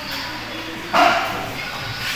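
A dog gives a single short bark about a second in.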